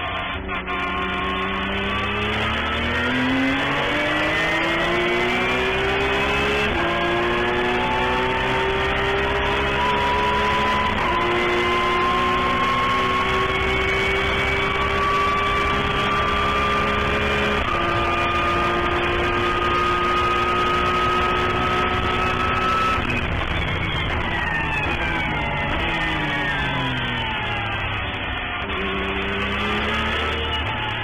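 Porsche 911 GT3 Cup's flat-six race engine heard from inside the cockpit, pulling hard with three upshifts a few seconds apart. It then drops in pitch through a run of downshifts under braking near the end, and picks up again just before the end.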